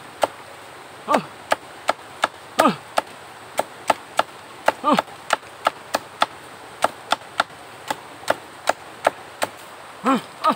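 Machete chopping and shaving a bamboo stalk to a point against a log: a quick series of sharp, dry chops, about two to three a second.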